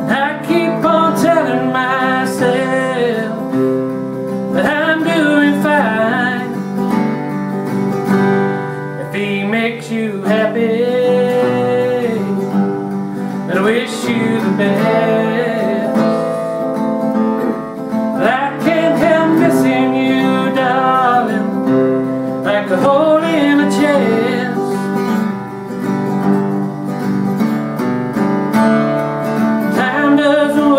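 A man singing while strumming an acoustic guitar: sung phrases of a couple of seconds come every few seconds over continuous strummed chords.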